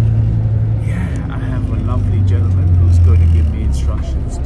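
Bus engine running, heard from inside the passenger cabin: a steady low hum that drops in pitch about a second in and shifts again near the end, with voices talking over it.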